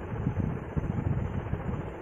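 Pen writing on paper, irregular scratchy strokes, over a steady low background rumble.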